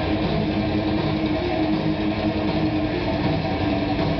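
A thrash metal band playing live: heavily distorted electric guitars and bass with drums in a loud, dense, unbroken wall of sound, a low chord held steadily through it.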